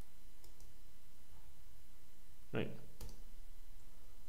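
Computer mouse button clicking: a faint click about half a second in and a sharper, single click about three seconds in, over steady background noise.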